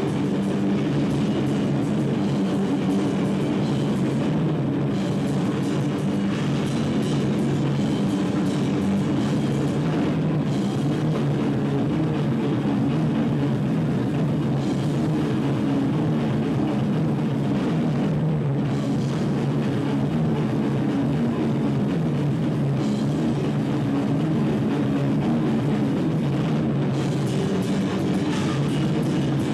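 A live rock band playing without a break: electric guitar over a drum kit with cymbals.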